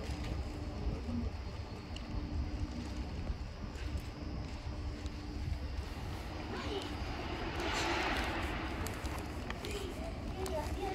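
Outdoor urban ambience: a steady low rumble, with a louder rushing swell that peaks about eight seconds in and then fades.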